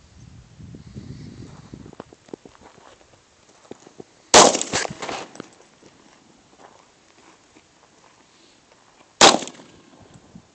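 Sig Sauer SP2340 .40 S&W pistol fired twice, about five seconds apart. Each sharp report is followed by a brief echo.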